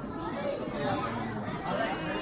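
Many young children's voices chattering at once in a large hall, a general murmur with no single voice standing out.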